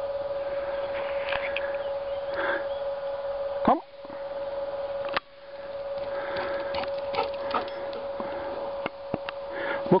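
A man calls "Come" once to a dog as a recall command, a little over a third of the way in. A steady whining tone runs underneath it; the tone drops out for about a second and a half just after the call and comes back with a click.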